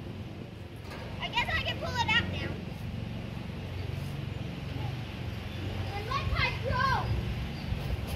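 Children's voices calling and chattering at a distance, too faint to make out words, in two short spells over a low steady hum.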